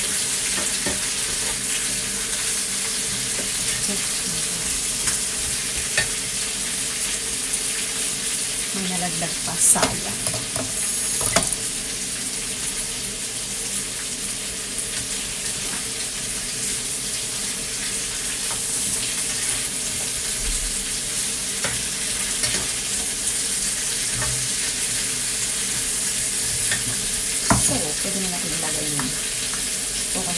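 Cubes of squash frying in a nonstick frying pan, a steady sizzle, stirred with a plastic slotted spatula. The spatula scrapes and knocks against the pan a few times, once around ten seconds in, again a second or so later, and again near the end.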